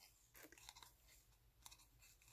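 Near silence, with a few faint rustles and clicks of fingers handling a small piece of cardstock wrapped in embroidery floss.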